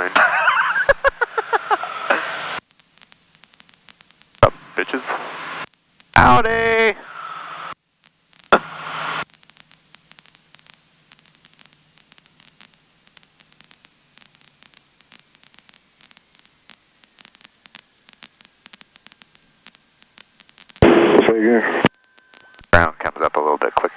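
Cockpit radio and intercom audio: a few short bursts of radio speech, then a long stretch of faint hiss with scattered crackling clicks between transmissions.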